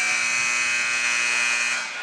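Gymnasium scoreboard horn giving one long, steady buzz that cuts off near the end: the end-of-half signal as the game clock runs out at the close of the second quarter.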